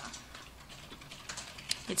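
A few light computer clicks, like keystrokes, in the second half over quiet room tone; a voice starts right at the end.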